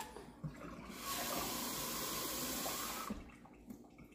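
Water running from a tap for about two seconds, starting about a second in and shutting off just after three seconds.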